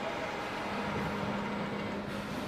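Steady machinery noise of a solar-panel assembly line, with a low steady hum under it.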